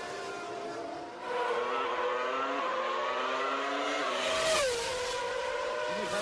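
Formula One race car engines at high revs, several engine notes climbing in pitch together as the cars accelerate. About four seconds in, one car passes with a falling pitch and a rush of air.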